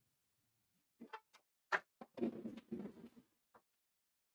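Front door being unlocked and opened: a few sharp clicks of the lock and handle about a second in, then a second of softer, noisier sound as the door swings open, and one more click near the end. All of it faint.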